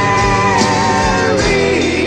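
Hard rock band recording with electric guitars, bass, keyboards and drums. A held lead note wavers in pitch over the band and bends downward a little past halfway.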